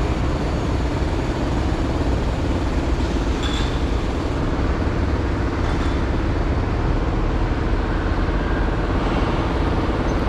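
Steady road-traffic noise, a low rumble from the engines and tyres of passing cars, buses and trucks.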